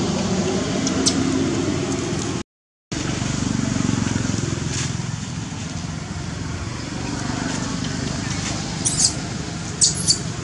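Steady outdoor background rumble and hiss, cut off by a brief dropout to silence about two and a half seconds in. Near the end come two short high squeaks from a baby macaque.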